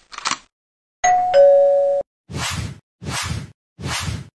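A two-note ding-dong chime like a doorbell, a higher note and then a lower one, about a second in and lasting about a second; it is followed by three short bursts of noise.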